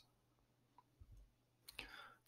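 Near silence: room tone, with a faint click about a second in and a soft breath near the end.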